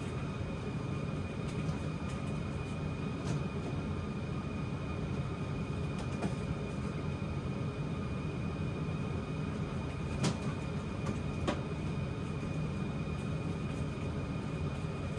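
A steady low mechanical hum with a faint high whine, and a few light clicks and knocks as a dog works at a plastic toy kitchen.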